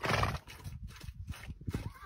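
Mare being milked: a short, loud, breathy burst at the start, then a run of low knocks like hooves shifting on packed dirt.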